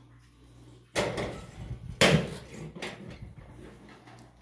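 Sheet-metal door being unlatched and opened: a sharp clack about a second in, then a louder clank a second later, trailing off into a fainter rattle.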